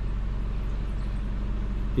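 Steady low rumble of motor traffic, with a faint engine hum.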